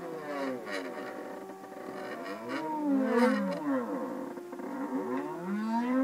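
Stepper motors of a small CNC pen plotter whining as its axes move together. Several pitches glide up and down and cross one another as the pen traces curved letter outlines.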